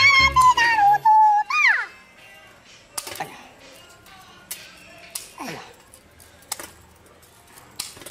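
A high wavering tone over music for about the first two seconds, ending in a short rising-and-falling glide. Then a few sharp metallic clicks, spaced a second or more apart, from tongs and a wire grill rack as smoked squid is lifted off onto a metal tray.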